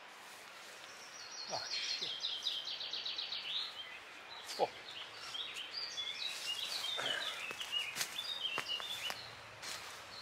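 Songbirds singing in woodland: a fast run of high repeated notes that falls in pitch over about two seconds, then varied high chirping phrases, with a few faint knocks.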